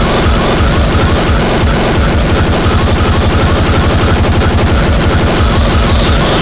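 Speedcore/industrial hardcore track: a very fast distorted kick drum pounding under a dense wall of harsh noise. A thin, high synth sweep climbs to its peak about two and a half seconds in, then falls back down.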